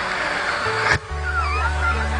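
A man cries out comically into a microphone: first a raspy, noisy shout, then, about a second in, a wavering cry that rises and falls in pitch. A steady low musical tone sounds underneath.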